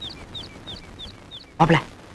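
A small bird chirping in a quick series of short, high notes that slide down in pitch, about three a second. A short burst of voice comes near the end.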